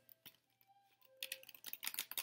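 Faint, irregular clicking of keys typed on a computer keyboard, starting about a second in.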